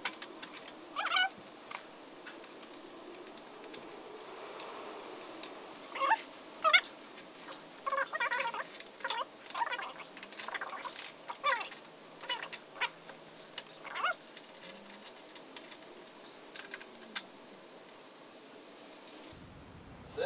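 Clinks and clicks of hand tools and metal suspension parts being handled and refitted at a car's front hub, with several short squeaky tones that rise and fall.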